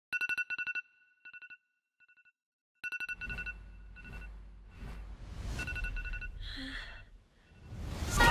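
A phone alarm ringtone going off: rapid trains of short, high electronic beeps. It drops quieter for a second or two, then comes back loud about three seconds in, with a low rumble underneath from then on.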